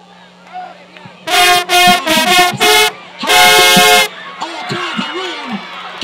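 Marching band baritone horn section playing a loud brass solo: a quick run of short punched notes, then one longer held note. The crowd's voices come up in the stands once the horns stop.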